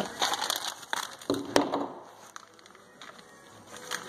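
Wrapping paper crinkling and crackling as a dog chews and tears at a wrapped present, busiest in the first two seconds and quieter after.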